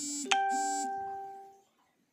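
A short electronic chime-like ding that rings out and fades over about a second, with two brief buzzy blips, one just before the ding and one just after it.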